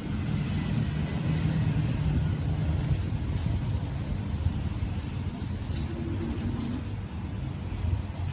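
A steady low background rumble, with a few faint ticks.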